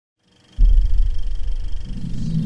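Logo intro sound effect: a deep boom that starts suddenly about half a second in and carries on as a low rumble.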